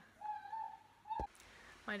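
A woman's high-pitched closed-mouth hum, one held note lasting about a second, cut off by a sharp click.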